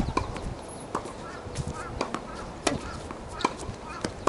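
Tennis rally on a hard court: sharp pops of the ball coming off the racket strings and bouncing on the court, about one a second.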